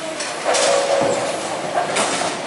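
Bowling alley din: balls rolling down the wooden lanes with a steady rumble and pins clattering. A louder crash comes about half a second in and another near the end.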